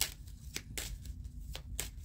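A deck of Kipper fortune-telling cards being shuffled and handled, giving a string of short, sharp card snaps at irregular intervals.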